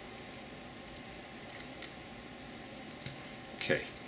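A few faint, scattered small clicks of an Allen key and fingers working the set screws of a Desert Eagle pistol's rear sight to loosen it.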